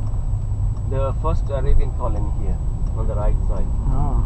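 Steady low rumble of a car driving, heard from inside the car, under voices talking that come and go.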